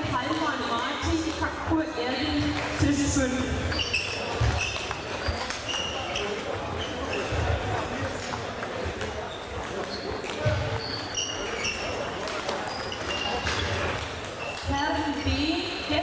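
Table tennis rally: the celluloid ball clicks off bats and table over and over, while rubber-soled shoes squeak and stamp on the sports-hall floor. Voices carry in the background.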